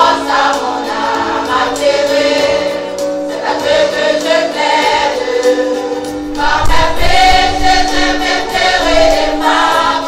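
Mixed choir of men and women singing a gospel hymn in held, sustained chords. About six and a half seconds in the singing grows louder and a deep low rumble joins underneath.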